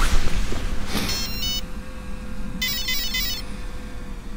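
Electronic power-up beeps from an RC helicopter's electronics as they restart: a short set of stepped tones about a second in, then a quicker run of rising and falling tones near the middle, over a steady low hum.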